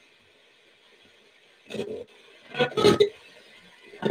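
A manual-tune radio being swept across the dial as a spirit box: faint static, then about two seconds in, two short chopped bursts of broadcast sound as it passes stations.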